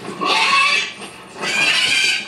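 Two shrill dragon screeches from a TV drama soundtrack. The first comes near the start, the second about a second and a half in, and each lasts under a second with a wavering pitch.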